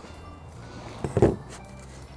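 Background music: a quiet, steady bed of sustained tones.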